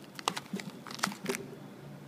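Silver anti-static foil bag around an SSD crinkling as it is handled and lifted out of its foam packaging insert: a quick run of sharp crackles and clicks in the first second and a half.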